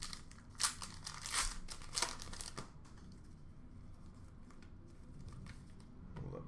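Plastic wrapper of an Upper Deck hockey card pack crinkling and tearing as it is opened by hand, a few sharp crackles in the first couple of seconds, then fainter rustling.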